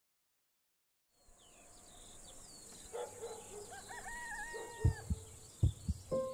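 Outdoor nature ambience of insects and birds fades in after a second of silence: a steady high chirring with scattered bird chirps. A long wavering call comes about three seconds in, and several deep, heartbeat-like thuds come near the end.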